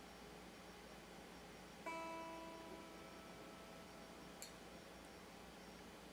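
Electric guitar string plucked once to check its tuning: a single high note rings out and fades over about a second, with a short click a little later.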